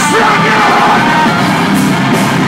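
Metalcore band playing live, loud distorted guitars and drums, with a yelled vocal over the band in the first second or so.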